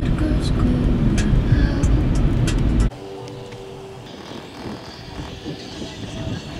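Low road and engine rumble inside a moving car's cabin, with a few light clicks. It cuts off abruptly about three seconds in, leaving much quieter outdoor ambience.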